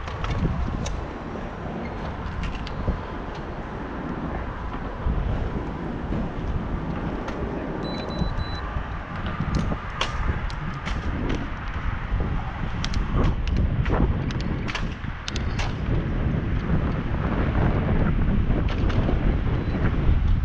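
Wind buffeting the microphone of a camera on a moving bicycle, with scattered sharp clicks and knocks, more frequent in the second half. It grows louder as the ride picks up speed.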